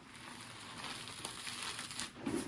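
Steady fine rustling hiss from handled material, an ASMR trigger sound.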